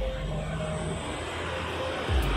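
Street traffic: a motor vehicle's engine running steadily as it passes, heard as a continuous low rumble with tyre and engine noise.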